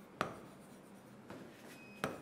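Faint strokes of a pen writing on a board, with a sharp tap of the pen tip about a fifth of a second in.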